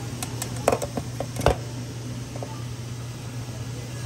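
A few light clicks and knocks of a stainless steel steamer pot and its lid being handled, the loudest about a second and a half in, over a steady low hum.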